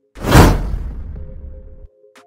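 A whoosh sound effect with a deep rumble under it. It hits hard just after the start and fades away over about a second and a half.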